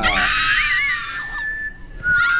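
A person's high-pitched, wavering squeal, loud at first and fading about a second in to a thin, steady high note held to the end.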